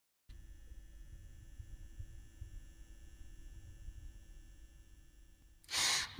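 Near silence with a faint low rumble and faint steady hum, then a short swell of noise near the end.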